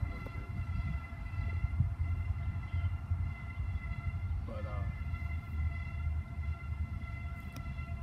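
Norfolk Southern manifest freight train's cars rolling past with a continuous low, throbbing rumble, over a steady high whine of several held tones.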